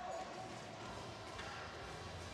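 Faint, steady background noise of an ice-hockey arena, with a light knock about halfway through.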